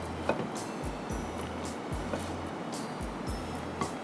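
Quiet background music with on-off bass notes, under light scraping and clicking of a silicone spatula tossing salad in a glass bowl.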